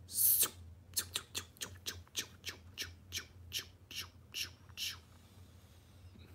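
A short hiss, then a quick run of sharp ticks, about six a second at first, that slows down steadily and stops about five seconds in, as the random winner is being drawn.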